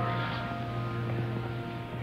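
A held chord of several bell-like tones fading slowly, over a steady low hum.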